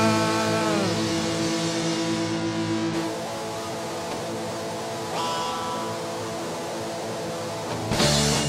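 Rock band playing live. Electric guitars hold a ringing chord that bends down in pitch and fades over the first few seconds. A quieter stretch of sustained guitar tones follows, and the full band with drums comes back in loudly at the very end.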